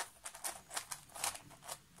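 Plastic pieces of a 3D-printed Axis Megaminx clicking and rattling as its faces are turned, a quick irregular run of small clicks, while the R' D' R D corner-twisting algorithm is carried out.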